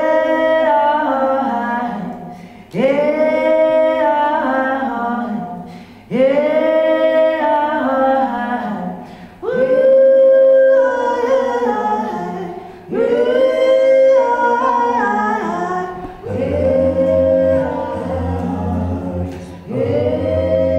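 Male voice singing a cappella, layered on a loop station into a choir-like stack: a sung phrase with held notes starts again about every three and a half seconds. A low bass part joins about sixteen seconds in.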